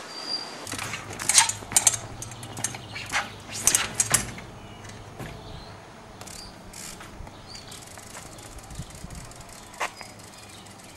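A run of sharp knocks and clicks in the first half, then a few fainter clicks over a quiet low hum.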